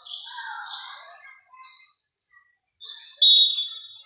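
Basketball shoes squeaking on a hardwood court: a run of short high squeaks, with the loudest and longest one a little after three seconds in.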